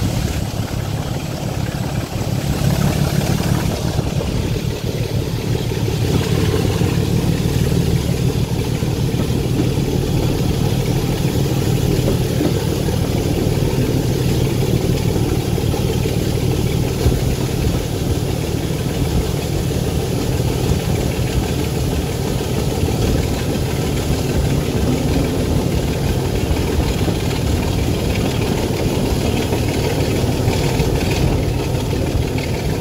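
Class 25 diesel locomotive D7612's Sulzer six-cylinder engine working steadily under power, heard from the train it is hauling, with the running noise of the train underneath.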